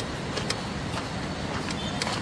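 Steady low outdoor background rumble, with a few light clicks scattered through it.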